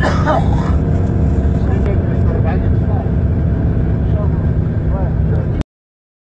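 A vehicle driving on a snow-covered road, giving a steady low rumble, with voices talking over it. The sound cuts off suddenly near the end.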